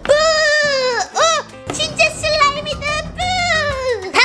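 Cheerful background music with high, drawn-out calls of 'ppu-u-u!' whose pitch slides up and down, repeated several times.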